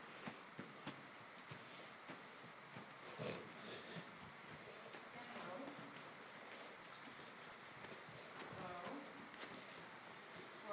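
Faint, uneven thuds of a Percheron draft horse's hooves on the soft dirt footing of an indoor arena as she is ridden at a walk and trot. Faint voices come in now and then.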